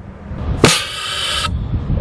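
Compressed-air cannon firing a parachute instrument probe: a sharp pop about two-thirds of a second in, followed by a rush of escaping air that cuts off suddenly a little under a second later.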